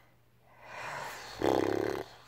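A woman breathes out softly, then, about one and a half seconds in, makes a short, low buzzing sound through pursed lips.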